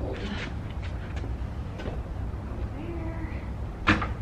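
A heavy spin bike tilted onto its front transport wheels and rolled across the studio floor, with a steady low rumble, a few clunks from the frame, and a sharp knock near the end as it is set down.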